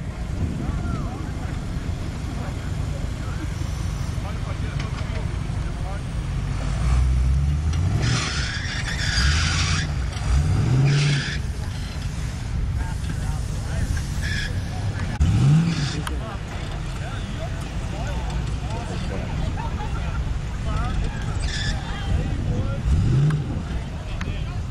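Jeep Wrangler engine running with a steady low rumble, revving up in short rising bursts several times as it crawls over dirt and log obstacles. Background voices are heard underneath.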